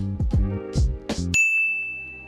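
Background music with falling notes stops abruptly about two thirds of the way in and gives way to a single sustained high ding, a bell-like sound effect.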